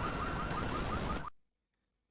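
Music-video sound effects of an explosion-torn street: a dense wash of blast and debris noise with a faint, fast-repeating high chirp, cutting off abruptly a little over a second in, then silence.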